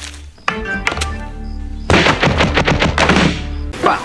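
Film soundtrack: music with a sharp hit about half a second in, then a fast flurry of thuds and clacks lasting about two seconds. Just before the end this cuts off and a steady hiss of heavy rain begins.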